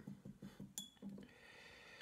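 Near silence, with one faint, light clink a little before halfway. After it comes a soft, continuous scrubbing as a paintbrush works in a well of a plastic watercolour paint tray.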